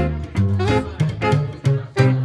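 Live swing-jazz trio playing: alto saxophone melody over plucked upright double bass notes and evenly strummed guitar chords.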